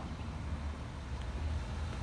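Low, steady rumble of a Ford F750's 6.7 Power Stroke V8 diesel idling.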